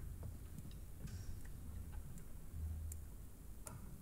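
Quiet stage sound at the start of a piece: a handful of soft, unevenly spaced clicks over a faint low hum that comes and goes.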